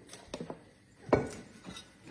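A few short knocks and clinks of vegetable pieces being set into a large glass jar by hand, the loudest just after a second in.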